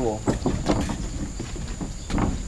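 A few light knocks of heavy timber beams being shifted and seated on a wooden hut frame, over a steady high insect drone.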